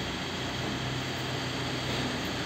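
Steady workshop background noise with a faint low hum, with no distinct knock or tool sound.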